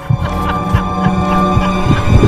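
Horror-trailer sound design: a sustained low drone with a steady higher tone above it, pulsed by quick thuds about four a second, swelling in loudness.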